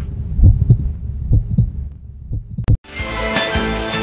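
Heartbeat sound effect: low double thuds, roughly one pair a second. A short high tone and a brief drop-out come just under three seconds in, and then music starts.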